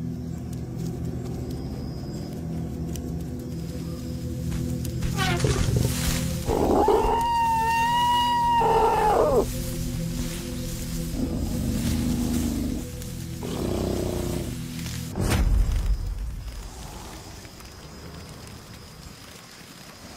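Tense background music under a long, high elephant trumpet-scream that rises, holds and falls away about seven seconds in, as the lions attack a young elephant. Weaker animal calls follow, then a heavy thump about fifteen seconds in.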